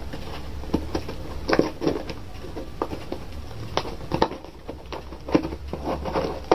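Scissors cutting into a cardboard parcel and its packing tape: irregular snips and crackles.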